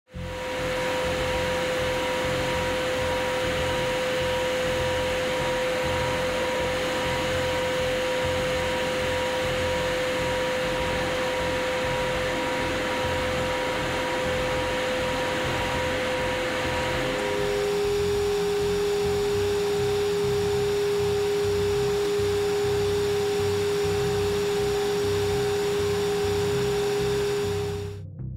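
Turboprop aircraft cabin noise from a WC-130J flying through a hurricane: a steady engine and propeller drone with a strong hum-like tone that steps down in pitch about 17 seconds in.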